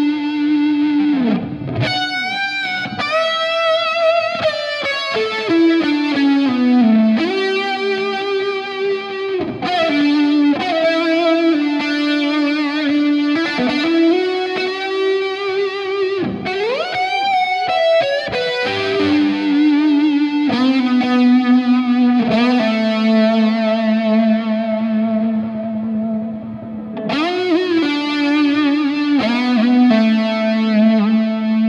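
Electric guitar through a Hiwatt DR103 100-watt valve head with muff-style fuzz, chorus and stereo delay, playing a slow lead of long sustained notes with several upward string bends and wide vibrato.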